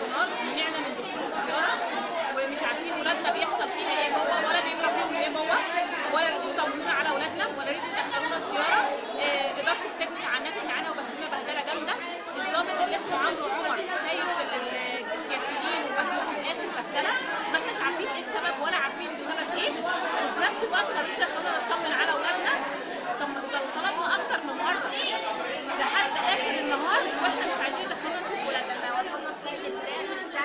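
A crowd talking over one another, a continuous babble of many voices in a large room.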